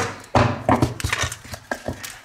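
A few short knocks and rustles from objects being handled and bumped on a desk, with a low rumble of handling noise between them.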